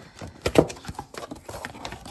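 A cardboard box with a foam insert being handled and opened by hand: a quick run of taps and knocks of card against card, the loudest about half a second in.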